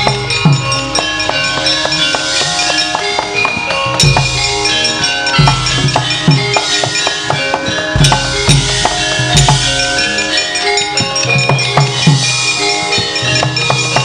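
Javanese gamelan playing an instrumental passage: metal bar instruments ringing steady notes over drum strokes, with a deep gong-like stroke about every four seconds.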